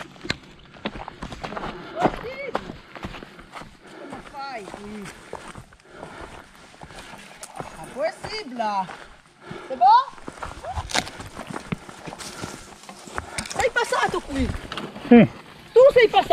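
Voices of riders calling out and talking in short, unclear bursts, over scattered clicks, rattles and footfalls from mountain bikes being ridden and pushed over a rocky dirt trail.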